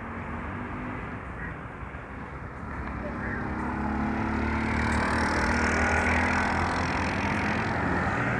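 A motor vehicle engine running, with a steady low hum that grows louder from about three seconds in and then holds.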